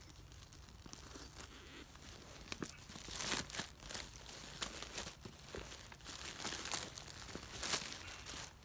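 Clear plastic packaging being slit, torn open and crinkled as it is pulled off a packed camp chair's carry bag. The crackling comes in irregular bursts, loudest about three seconds in and again just before the end.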